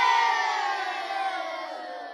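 Audio sting for the production company's logo: a held chord of many pitched tones, sliding gently downward and fading out.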